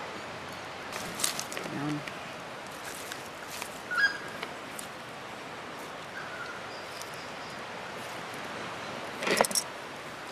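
Light clicks and knocks of serving tongs on a plate and salad bowl while salad is served, over a steady outdoor background hiss. A brief voice sound comes near the end.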